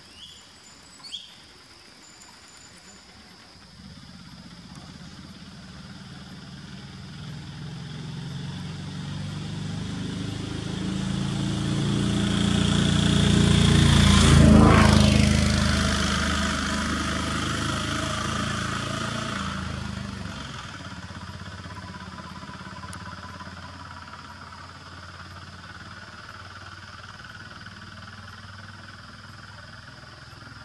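A motor vehicle driving past: its engine builds slowly for about ten seconds, is loudest about halfway through with a drop in pitch as it passes, then fades away over the next ten seconds.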